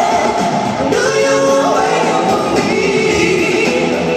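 A vocalist singing with band accompaniment, holding long notes and sliding up between them.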